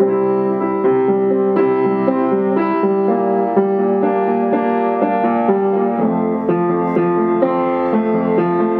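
A piano playing chords with a melody of held notes over them, moving from note to note through the passage.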